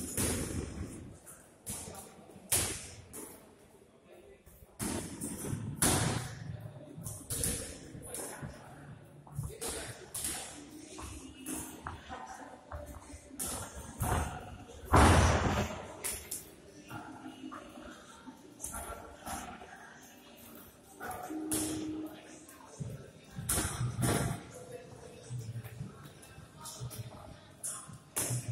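Boxers sparring: gloved punches landing as irregular sharp thuds and slaps, the loudest about fifteen seconds in.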